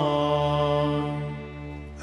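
Maronite liturgical chant ending on one long held sung note that slowly fades, over a low steady drone.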